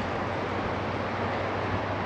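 Steady wind noise on the microphone, an even rush with a low steady hum beneath it.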